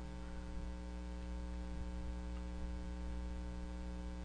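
Steady electrical mains hum picked up in the microphone recording, an unchanging low buzz with faint hiss underneath.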